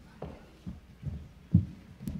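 Footsteps on a stage floor: about five irregular low thuds, the loudest about one and a half seconds in.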